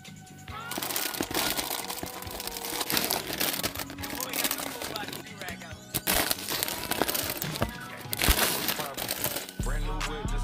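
Foil chip bags crinkling and rustling as they are handled and packed into a plastic storage drawer, in several loud surges, with music underneath.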